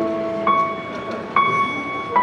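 Electronic keyboard playing a slow intro: two high notes struck about a second apart, each ringing on over held lower notes.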